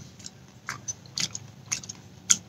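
A few faint, scattered clicks and small scrapes of food containers being handled.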